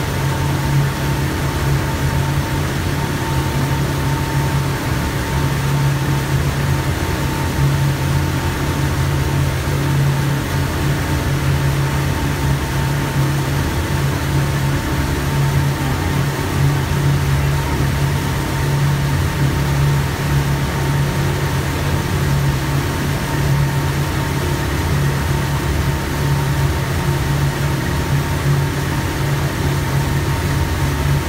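Mercury outboard motor running steadily under way: a constant low engine drone with a thin steady whine above it, mixed with the rush of the churning wake.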